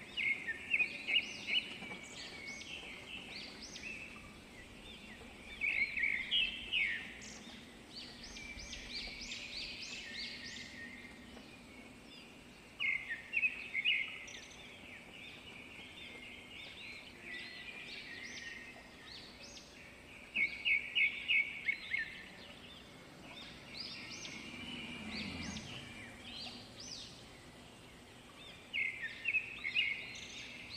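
Birds calling outdoors: bursts of quick, high chirps come about every seven seconds over a steady background hum of the surroundings.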